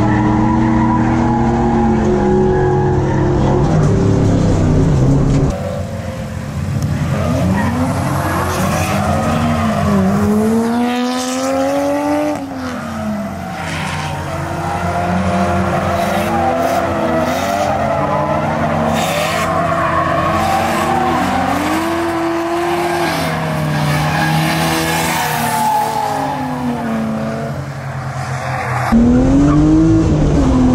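Drift cars sliding with engines held high in the revs and tyres squealing. For the first few seconds the in-car sound of the BMW E36's M52 straight-six is held at a steady high pitch. Through the middle, engine notes rise and fall again and again as cars slide past with tyre squeal. Near the end the steady in-car engine sound returns.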